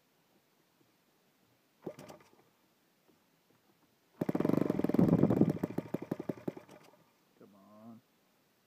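Saito FA-72 four-stroke model aircraft engine, converted to spark ignition and running on gasoline, being hand-flipped. It gives one pop about two seconds in, then catches about four seconds in. It runs unevenly for under three seconds and dies, a start that does not hold.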